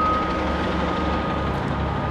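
A red London double-decker bus idles with a steady low engine rumble. Over it sounds a single steady high electronic tone, which fades out near the end.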